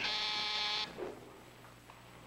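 A short, steady, buzzy tone of one unchanging pitch, lasting under a second and cutting off suddenly.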